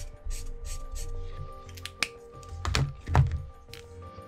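Soft background music with held tones, over a series of short, scratchy strokes of a felt-tip marker swatching on sketchbook paper. A couple of louder low knocks come near three seconds in as the marker is handled and set down on the pad.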